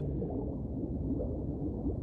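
Low, muffled underwater ambience: a steady low rumble of moving water with faint gurgling.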